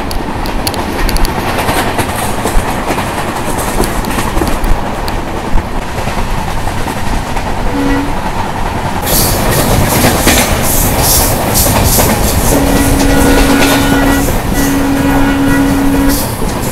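Passenger train running at speed, heard from an open coach door: steady rushing wheel and wind noise, with rail clatter turning sharper about halfway through. A train horn gives a short toot about eight seconds in, then two long blasts near the end.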